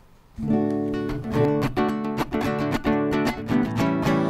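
Acoustic guitar strumming chords in a steady rhythm, starting about half a second in. This is the instrumental introduction to the Mass's sung entrance hymn.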